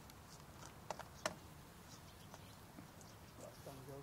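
Quiet outdoor ambience with a few faint ticks and two sharp clicks about a second in, a quarter-second apart. A voice starts near the end.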